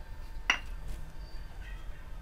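A spoon clinks once against the rim of a ceramic mixing bowl about half a second in while flour is added to cake batter; a short, sharp knock with a brief ring.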